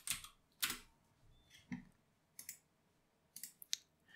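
Faint computer keyboard keystrokes: a handful of separate taps spread unevenly over a few seconds, as a web address is typed and entered.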